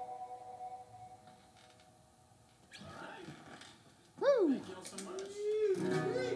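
The last chord of an acoustic guitar and a pedal steel guitar rings out and fades away within the first second. About four seconds in comes a loud swooping sound that rises and falls steeply in pitch, followed by a held tone.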